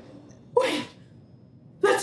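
A woman's short, sharp, breathy gasp about half a second in, and another near the end.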